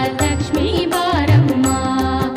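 Kannada devotional bhajan: women's voices singing a melody over a steady drone and regular percussion strokes.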